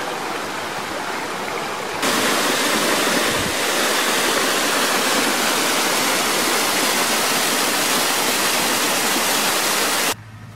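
Small jungle waterfall cascading over rocks, a steady rush of water. About two seconds in it jumps louder and brighter, heard from close to the falls.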